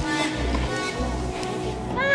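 Background electronic dance music in a softer stretch: held synth tones over a bass that pulses about twice a second, with no drums.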